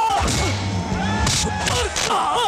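Fight-scene soundtrack: background music under shouts and grunts, with a short burst of a fight sound effect about one and a half seconds in.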